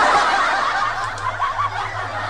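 Laughter from several high-pitched voices, running on without a break, with a steady low hum beneath it.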